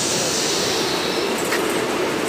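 Textile processing machinery running steadily as printed fabric feeds over its steel rollers: a continuous mechanical rumble and hiss, with one brief click about one and a half seconds in.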